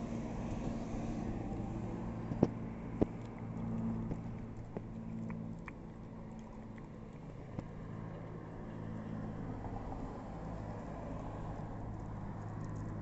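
A corgi puppy noses and mouths a raw chicken leg on wooden deck boards, giving two sharp knocks about two and a half and three seconds in and a few fainter clicks later. A steady low mechanical hum runs underneath.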